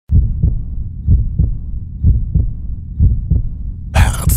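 Heartbeat sound: low, muffled double thumps (lub-dub), four of them, about one a second.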